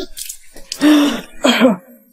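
A person coughing twice in quick succession, coughing up water.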